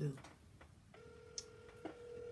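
Outgoing phone call ringing on speakerphone: a steady ringback tone comes in about a second in and holds.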